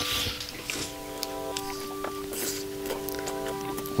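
Close-miked eating sounds: biting and chewing grilled fish, with a few sharp wet clicks and short crackles, over soft background music holding steady notes.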